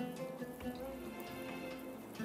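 Soft background music with long held notes. Under it are faint wet squelches of cubed raw chicken being mixed with spices by gloved hands in a glass bowl.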